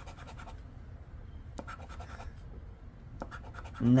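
Edge of a poker chip scraping the coating off a paper scratch-off lottery ticket, in short scratching strokes that come in three spells with pauses between.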